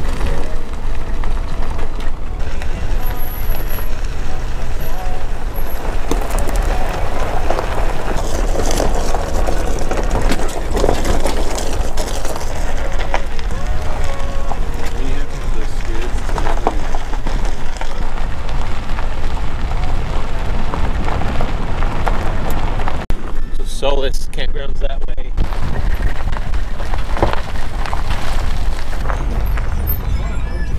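Steady wind noise on a vehicle-mounted camera's microphone, with tyre and engine rumble, as a pickup truck drives a gravel dirt road. There is a short dip a little past three-quarters of the way through.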